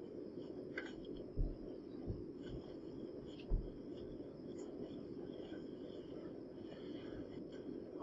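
Quiet room tone with a steady low hum, and a few soft footsteps, three low thumps in the first few seconds, as people walk into a room.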